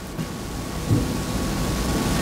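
A pause in speech filled with a steady hiss of background noise, with a low rumble underneath.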